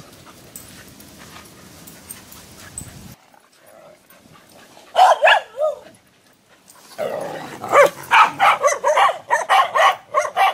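Dogs barking and yipping in rough play. A short burst of barks comes about five seconds in, then from about seven seconds a rapid run of barks, roughly three to four a second. Before that, for the first three seconds, there is only faint low noise.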